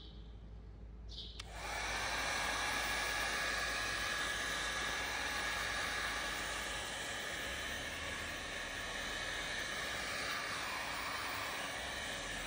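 Heat gun switched on about a second and a half in and blowing steadily, with a faint high whine from its fan, shrinking heat-shrink tubing over a soldered wire joint.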